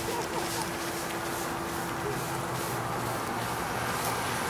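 Outdoor street noise: a steady hiss with faint, distant voices and a steady low hum that fades out about halfway through.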